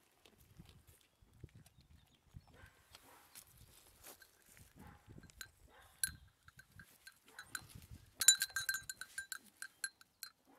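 A small bell on a goat clinking a few times from about halfway, then jangling fast for about a second near the end, the loudest sound here. Soft low rustling comes before it as the goat moves at close range.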